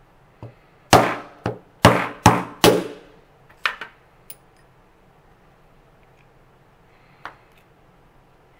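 A hammer strikes a steel rod held in a Lee Loader reloading die on a wooden block: five sharp blows about a second in, within under two seconds, each briefly ringing. A few lighter metal knocks follow as the die parts are handled.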